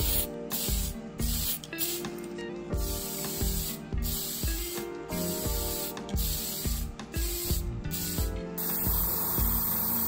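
Aerosol spray-paint can hissing in short bursts with brief breaks between them as paint is sprayed onto a plastic model car body. About eight and a half seconds in, this gives way to the steady, continuous hiss of an airbrush.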